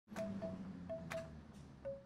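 Chime-like notes struck about five times, each a short clear ring at much the same pitch, over a low steady rushing noise.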